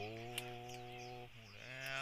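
A man's voice holding one long, level "oh" for just over a second, then a short spoken syllable near the end.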